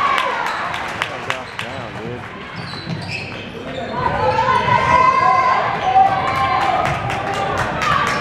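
Basketball bouncing on a hardwood gym floor during play, heard as a series of sharp knocks, with voices calling out in the echoing gym, loudest from about halfway through.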